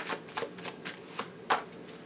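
Tarot cards being shuffled and handled by hand: a few crisp card snaps with soft rustling between them, the loudest snap about a second and a half in.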